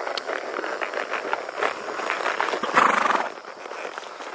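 Horse's hooves clopping on a paved road as it walks, a steady run of clicks, with a brief louder burst of noise about three seconds in.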